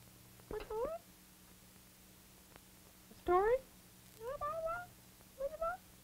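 A puppeteer's voice making short, wordless squeals that glide upward in pitch: the baby talk of a baby dragon puppet. There are four calls, the loudest about three seconds in, over a steady low hum.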